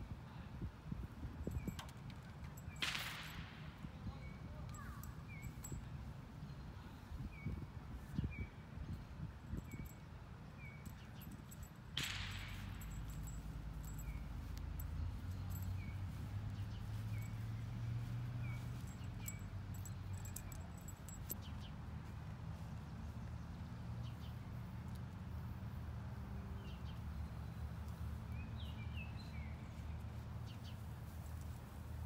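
Outdoor ambience: a small bird chirping repeatedly in short high chirps over a steady low rumble, with two brief whooshes, one about three seconds in and one about twelve seconds in.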